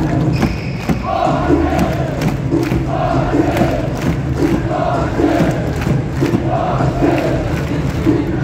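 Sanfrecce Hiroshima supporters chanting in unison in a football stadium, many voices repeating a short phrase in a steady rhythm.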